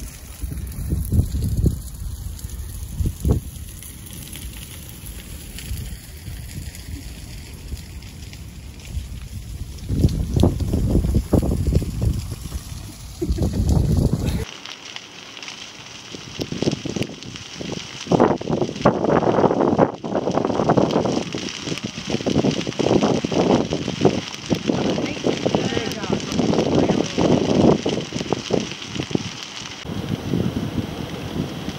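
A large bonfire of pruned green branches burning, its flames rushing and crackling in uneven surges. About halfway through, the sound changes abruptly and becomes brighter and denser.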